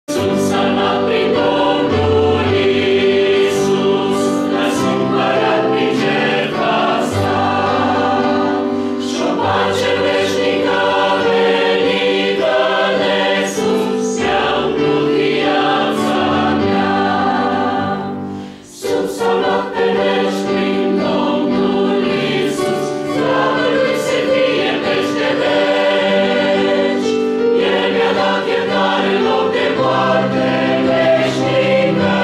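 Women's choir singing sustained chords in parts, with a brief break for breath about two thirds of the way through.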